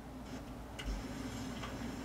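A few faint ticking clicks over a low steady hum.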